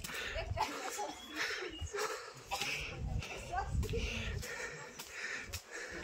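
A person breathing hard in airy puffs about once a second while walking on a stone path, with low thuds of footsteps and handling.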